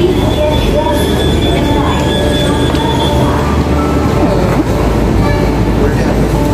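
Metro train noise at a station: a steady din with a high whine that stops about three seconds in, and people's voices mixed in.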